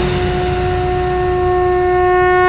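A conch shell blown in one long, steady note over a low rumble.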